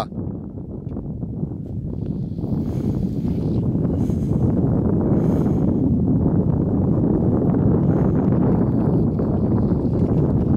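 Dirt bike engine running under load on a loose hill climb, building up over the first few seconds and then held steady as the rear wheel digs in.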